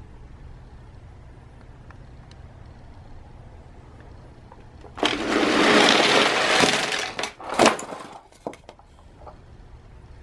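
A crowd of toy police cars and ambulances rolling down a board ramp together: a sudden loud rush of many small wheels on the board starting about five seconds in and lasting about two seconds, then several sharp clacks as the cars collide and pile up.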